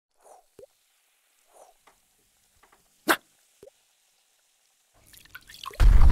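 Cartoon sound effects: a few small drips and plops, one sharper and louder about three seconds in, then a rising fizz that breaks into a loud, deep explosion boom near the end.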